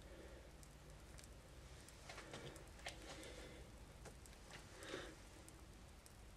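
Near silence: room tone, with a few faint soft sounds about two, three and five seconds in.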